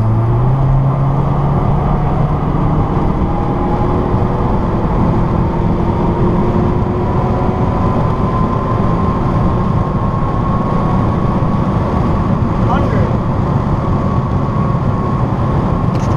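Turbocharged 2.3-litre four-cylinder (K23A1) of a tuned 2007 Acura RDX under full throttle in third gear, heard from inside the cabin, its note climbing slowly and steadily as the SUV accelerates from 60 toward 100 mph, with road and wind noise under it.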